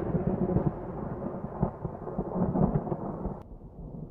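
A low, thunder-like rumble that fades gradually. About three and a half seconds in it turns suddenly duller.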